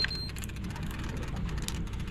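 A large offshore fishing reel being wound to bring a fish up from deep water, with faint rapid clicking over a low steady rumble. A thin high whine cuts off just after the start.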